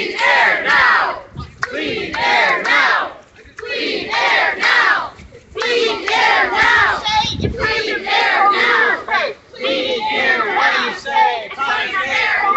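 A crowd of protesters chanting the slogan "Clean air now" in unison, the short phrase repeated about every two seconds.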